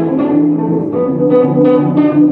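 Live band music: an electric guitar, a Les Paul, plays a solo of held, overlapping notes over the trio's backing.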